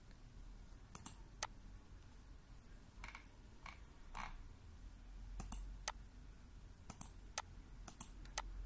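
Computer mouse button clicking: about ten separate sharp clicks, several in pairs about half a second apart, at a low level.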